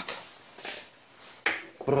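Brief handling noises: a couple of short, light knocks or clatters, the clearest about one and a half seconds in, as the camera and tools are moved; a word begins right at the end.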